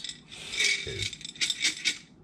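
Soaked popcorn kernels rattling against the inside of a glass jar as it is shaken and turned over to drain, a quick run of clicks.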